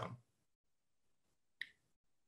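Near silence, broken by one brief, sharp click about one and a half seconds in.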